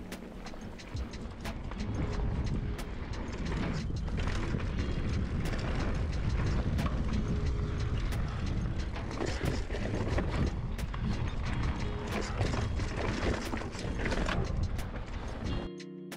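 Mountain bike ridden fast down a dirt trail: tyre and wind noise with frequent sharp clicks and rattles from the bike over the bumps, and music faintly underneath. Just before the end the riding noise stops and only the music is left.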